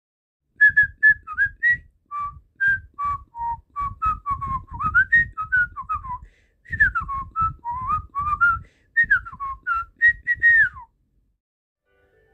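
A person whistling a quick, choppy tune of short notes that slide up and down, with a low puff of breath noise under each note; it stops about a second before the end.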